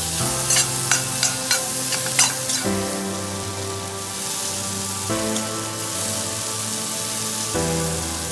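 Diced raw mango and spices sizzling in a stainless steel pan while a spatula stirs it, with quick scrapes and clicks against the pan through the first couple of seconds, then a steady sizzle.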